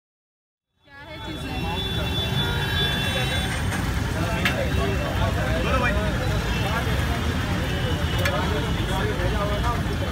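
Busy street ambience: many voices talking over one another above a steady rumble of traffic, with a couple of sharp clicks. It is silent for about the first second, then fades in and holds steady.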